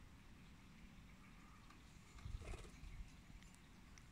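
Near silence, a faint outdoor background with a brief soft low bump a little past halfway.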